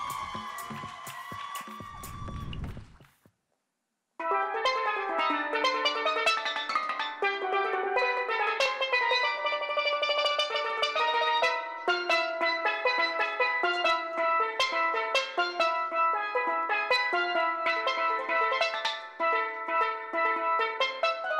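A steelpan plays solo, starting about four seconds in after a moment of silence: a quick melody of many struck, ringing notes on a single lead pan.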